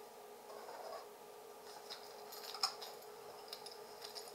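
Faint handling noises: a few light clicks and taps, the sharpest about two and a half seconds in, over a low steady hum.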